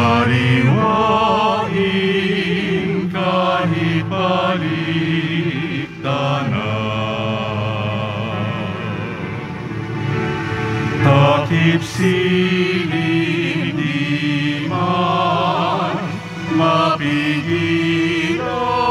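Communion hymn at a Catholic Mass: sung voices with vibrato over a steady, sustained instrumental accompaniment, with short breaks between phrases.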